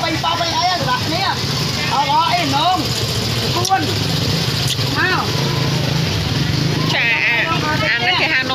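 People talking over the steady low hum of a nearby idling vehicle engine, which cuts off about seven seconds in.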